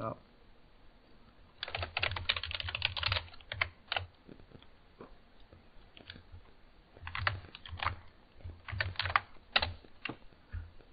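Typing on a computer keyboard: two quick runs of keystrokes, the first about two seconds in and the second about seven seconds in, with a pause of a few seconds between.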